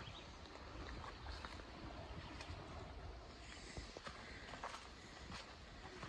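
Faint footsteps and rustling of brush and twigs, with scattered small snaps and taps, as someone climbs through undergrowth up a steep bank.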